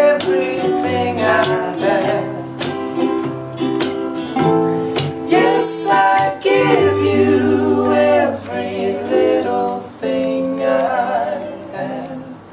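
Acoustic guitar and ukulele strummed together, with men singing over them.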